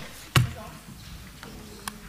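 A single short spoken reply, 'Présent', heard as one brief sharp burst about a third of a second in, then low steady room tone with a faint click near the end.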